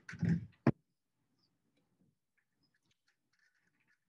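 Stiff picture cards being handled: a brief soft rustle, then a single sharp tap just under a second in, followed by near silence in the room.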